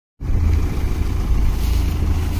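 Combine harvester's engine running steadily, a low rumble, with some wind on the microphone.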